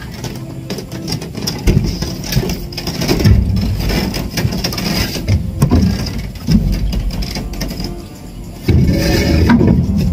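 Irregular thuds and rattles from wooden posts and planks of a timber hut frame being gripped, shifted and handled.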